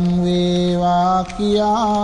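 A Buddhist monk's voice chanting Sinhala verse in long held notes: one steady note, then after a brief dip a slightly higher one with a wavering turn in it near the end.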